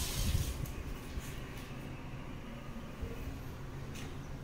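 Rumbling microphone handling noise from a phone being carried, strongest in the first second, with a brief hiss fading out at the start. After that, steady low background noise in an empty room.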